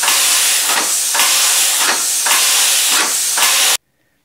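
Homemade compressed-air piston engine running at about 55 rpm: a loud hiss of air exhausting, swelling in regular pulses with each stroke. It cuts off abruptly near the end.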